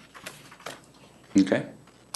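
A man's voice saying "okay" about a second and a half in, picked up by a meeting-room microphone, with a few faint clicks before it.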